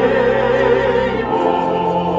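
Church choir singing sustained notes with vibrato over steady organ notes in the bass; the chord changes a little past halfway.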